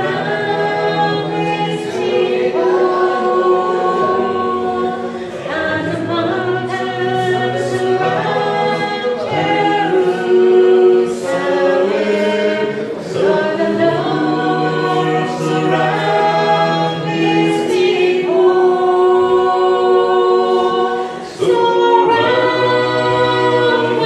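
A small group singing a hymn a cappella in several-part harmony, men's and women's voices together, holding long chords with short breaks between phrases.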